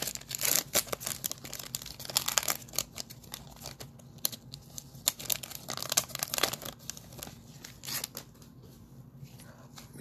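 Foil wrapper of a trading-card pack being torn open and crinkled by hand, a run of short rips and crackles that thins out near the end.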